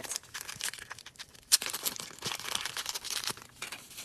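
Foil blind-bag packet torn open and crinkled in the hands, then a small white wrapper unfolded: irregular crackling with one sharper crack about a second and a half in.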